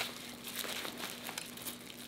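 Clear plastic wrapping crinkling in small irregular crackles as it is handled.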